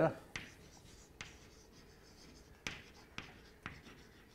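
Chalk writing on a blackboard: about five short, sharp taps and scratches of the chalk, spaced unevenly, as words are written.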